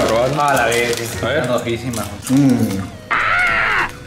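Men talking excitedly, with a loud high-pitched exclaimed voice near the end, over crackling from a plastic chip bag being handled.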